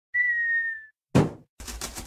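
Cartoon sound effects: a short whistle that sags slightly in pitch, then a single thud of a cardboard box landing, then a rapid run of scratchy strokes of a box-cutter blade slicing through the box's top.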